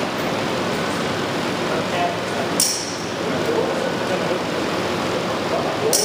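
John Deere diesel engine running steadily on a test stand. A short, sharp hiss comes about two and a half seconds in and again at the very end.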